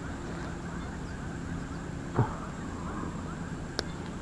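Quiet outdoor background with faint, rapid chirping throughout. A brief voice sound comes about two seconds in, and a single sharp click near the end.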